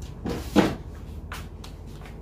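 Short knocks and a click from small objects being handled and set down, the loudest about half a second in and a sharper click a little past the middle.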